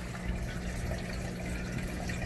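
Aquarium filter running: a steady trickle of moving water over a low, even hum.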